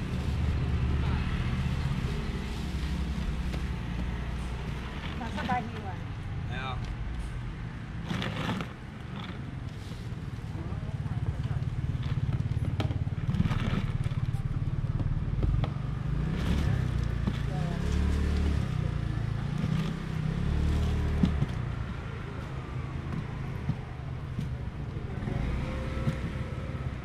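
Outdoor market ambience: indistinct voices with a steady low rumble, broken by a few short clicks and knocks.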